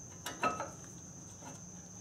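Two short, light clicks close together near the start, as a brake pad is handled against the steel caliper mounting bracket.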